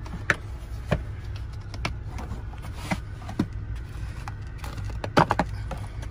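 Plastic socket-set case being unlatched and opened, with several sharp clicks and snaps, the loudest pair about five seconds in, as chrome sockets are handled. A steady low hum runs underneath.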